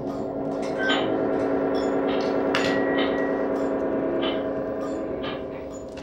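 A sustained, gong-like ringing drone of several held tones with a shimmering beat, swelling about a second in and easing off near the end, with scattered light clicks and taps over it.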